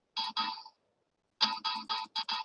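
Phone ringtone coming through the video-call audio: a short electronic melody of quick notes, two notes early on and then a faster run of notes in the second half.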